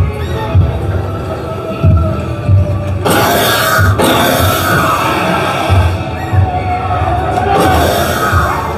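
Haunted-house soundtrack: dark music over deep throbbing pulses that come about every second or so. About three seconds in, a loud burst of hissing noise cuts in for about a second and stops abruptly.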